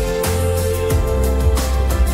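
Live pop band music over a concert sound system, in an instrumental passage without vocals: held chords over a heavy bass line, with a few drum hits.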